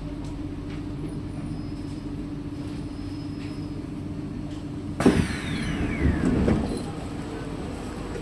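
Steady hum of a stationary Kawasaki/Sifang C151A metro train. About five seconds in, its passenger doors and the platform doors slide open with a sudden clunk and a falling whine, followed by about two seconds of rattling door movement.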